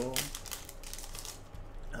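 Foil wrapper of a Yu-Gi-Oh booster pack crinkling and rustling as it is pulled open and the cards are slid out. A rapid run of crackly rustles fills the first second and a half, then fades.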